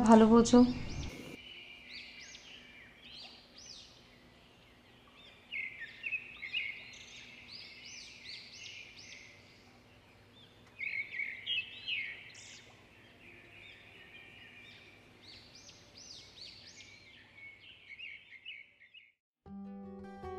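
Small songbirds chirping, short high calls coming in clusters of several every second or so, with quieter gaps between the clusters.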